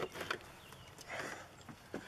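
Metal latch on a wooden shed door being worked open: a few light clicks and knocks at the start and another near the end as the door swings.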